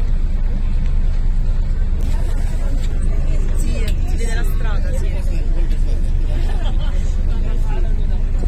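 Tender boat's engine running steadily under way, a low even drone, with people talking over it from about two seconds in.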